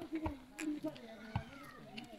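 Voices of players and onlookers at an outdoor volleyball game calling out in drawn-out tones, with two sharp thuds of the volleyball being struck, one just after the start and one past the middle.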